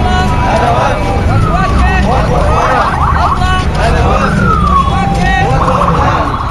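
Street procession: many voices calling out at once over a heavy low rumble of motor traffic, with a couple of falling wails about a second and a half in and again past the four-second mark.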